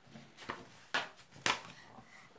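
A picture book's paper page being turned and smoothed down by hand: three short papery sounds about half a second apart.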